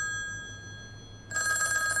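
Old black desk telephone's bell ringing. One ring fades away at the start, and the next ring begins about a second and a half in.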